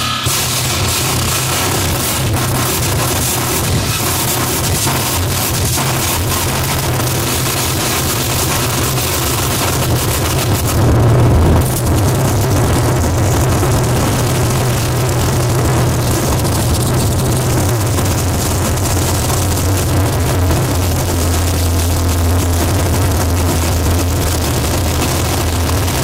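Live harsh noise from effects pedals and noise boxes run through a small mixer: an unbroken wall of distortion with a heavy low rumble beneath, swelling briefly louder about eleven seconds in.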